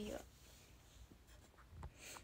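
Near silence: quiet room tone after a spoken word ends at the start, with a few faint clicks about a second in and near the end.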